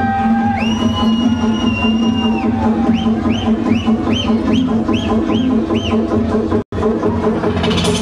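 Loud electronic dance music over a club sound system, mixed from vinyl turntables, with a steady bass beat. A held high synth tone gives way to a string of short rising-and-falling synth notes, about two or three a second. Near the end the sound cuts out for a split second, then a rush of high hiss comes in.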